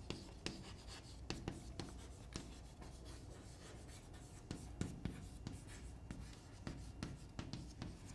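Chalk writing on a chalkboard: a run of faint, irregular taps and scratches as a word is written out stroke by stroke.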